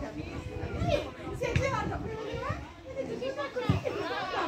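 Several high-pitched women's voices shouting and calling to one another across a football pitch during play, over a low outdoor rumble. There are a couple of short low thumps, one about a second and a half in and one near the end.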